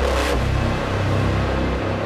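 Dark, tense background score with a deep, sustained bass drone and held notes. A brief rushing swell fades out just after the start.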